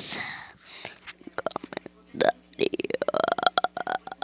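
A child's voice making a long, creaky, pulsing vocal noise with no words, starting a little past halfway and running on to the end.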